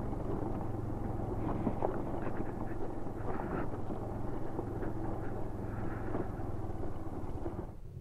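Bajaj Dominar 400 motorcycle's single-cylinder engine running steadily while riding a gravel track, with a low, even engine tone throughout.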